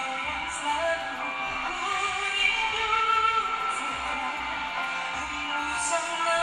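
A female vocalist singing live with keyboard and band accompaniment, the voice holding long sustained notes.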